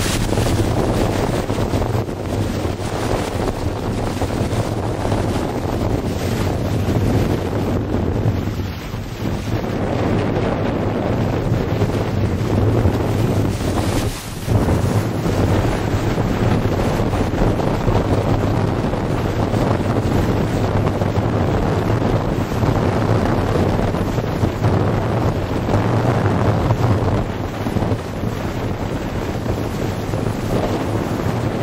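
Wind buffeting the microphone over the rush of water along a sailboat's hull while under sail, a steady, loud noise with a low rumble and one brief dip about halfway through.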